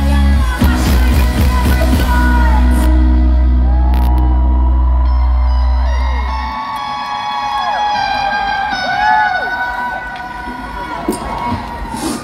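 A rock band's final sustained chord, deep bass held under it, ringing out and cutting off about six and a half seconds in, then the festival crowd cheering, whooping and whistling.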